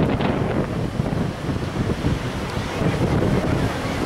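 Wind buffeting the microphone over the steady sound of ocean surf breaking on the shore below.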